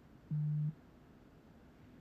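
A single short, steady low-pitched electronic tone, lasting under half a second, that starts and stops abruptly.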